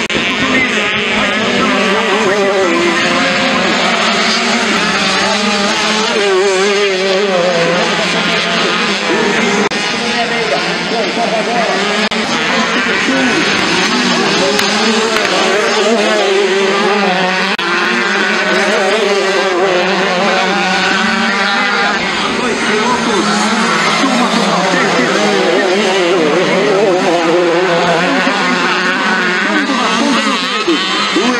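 Several small two-stroke dirt bikes racing, their engines revving up and down as they power out of turns and shift, overlapping with one another the whole time.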